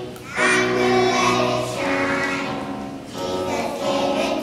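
Children's choir singing with piano accompaniment, in sustained phrases with a short breath about three seconds in.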